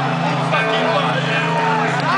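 Live metal band playing a slow, clean-guitar song intro through a festival PA, with crowd voices singing and shouting along. Recorded from inside the audience.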